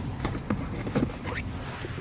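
A phone being handled, with scattered soft rustles and small knocks, over the low, steady hum of a car idling.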